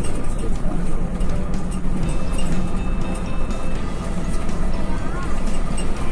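Steady engine drone and road noise inside the cabin of a moving Sinar Jaya intercity bus.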